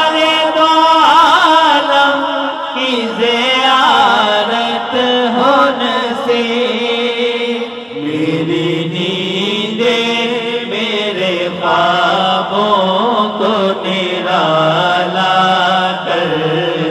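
Urdu naat sung by a male reciter into a microphone, long held lines with melismatic turns and no instruments. A lower voice holding a steady line comes in about halfway and continues under the lead.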